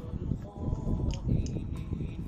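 Wind rumbling on the microphone, with a few light clicks from a metal garlic press and ladle being handled over the pot.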